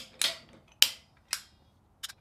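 A few sharp metallic clicks and knocks, about half a second apart and fading, from a hand tubing bender's metal parts being handled against a slatted steel welding table.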